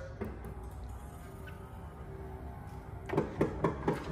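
Power radio antenna of an Aston Martin Lagonda retracting after the radio is switched off: quiet at first, then a quick run of small clicks about three seconds in.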